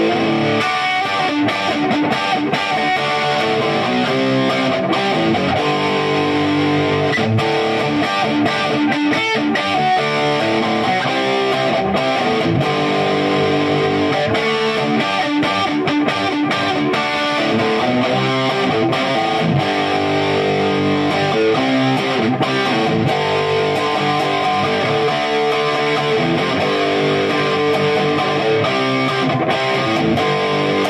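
A 2004 Gibson SG Standard electric guitar played through a guitar amplifier: strummed chords and riffs that change about every second, with sharp pick attacks.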